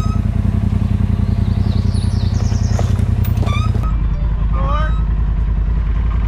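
Polaris RZR side-by-side's turbocharged twin-cylinder engine running steadily at low revs while crawling over rocks. About four seconds in its sound turns deeper and closer, with brief voice sounds over it.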